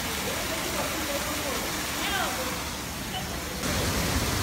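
Steady rushing hiss of water in an indoor spa pool, with faint distant voices. The noise changes character abruptly near the end.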